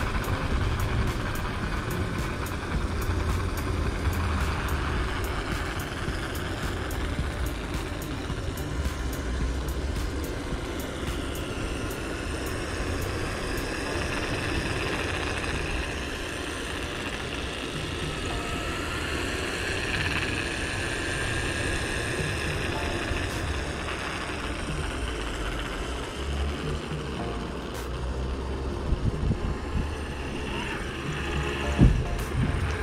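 Wind rumbling on the microphone and road noise from a moving electric unicycle, with a faint whine that rises and falls in the middle stretch.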